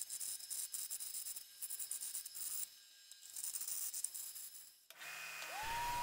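Bandsaw blade cutting through a hard maple blank, a quiet hiss that drops away briefly twice. Near the end a motor whine rises in pitch and settles steady as the disc sander spins up.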